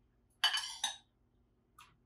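A spoon clinking and scraping against a small glass bowl as sauce is scooped out, one clink with a short ring about half a second in, then a faint tick near the end.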